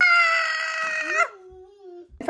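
A toddler's long, high-pitched squeal for about a second, then dropping to a much quieter, lower hum held with closed lips.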